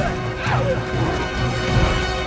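Film battle soundtrack: orchestral score over fight effects with crashing impacts, and a sound falling in pitch about half a second in.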